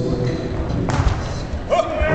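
Crowd murmur in a large hall, with a single thump about a second in and a brief voice near the end.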